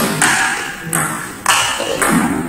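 Table tennis rally, with the ball struck back and forth: three sharp hits about two-thirds of a second apart, each ringing on in the hall.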